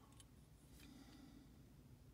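Near silence: room tone with a few faint, light clicks from a small die-cast model truck being handled in the fingers.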